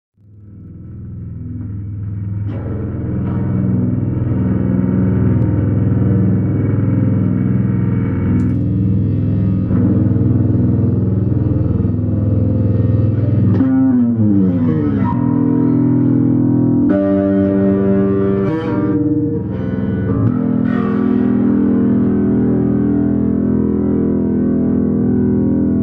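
Two electric bass guitars played through effects pedals in an ambient noise piece: sustained low drones that fade in over the first few seconds, several notes gliding downward about halfway through, then new held notes ringing on.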